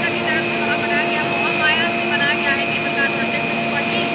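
Steady mechanical hum of cable-car ropeway station machinery, holding several fixed tones without change.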